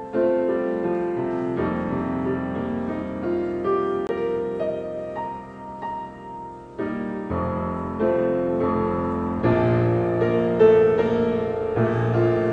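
Solo grand piano playing a slow piece of held chords and melody notes. It drops to a softer passage about halfway through, then grows fuller with deeper bass notes near the end.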